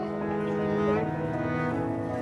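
Background music of held bowed-string notes, cello-like, changing chord every second or so.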